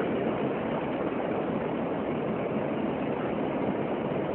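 A steady, even rush of background noise, dull in tone, with no distinct events in it.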